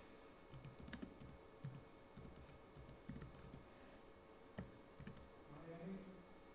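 Faint typing on a computer keyboard: irregular soft key clicks as a few words are typed.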